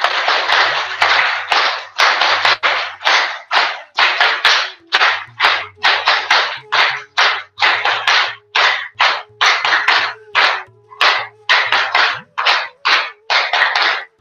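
Hands clapping in a rhythmic drill. The first two seconds are a fast, continuous run of claps, which then settles into separate claps at about two to three a second in an uneven, grouped pattern.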